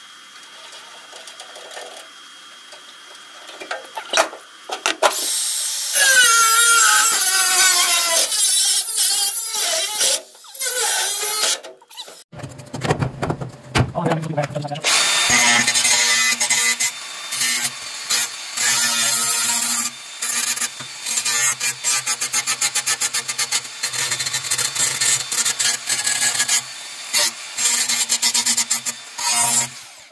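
Makita angle grinder with a cutting disc cutting into the steel dash panel. It starts about five seconds in, and through the second half it cuts in many short repeated passes.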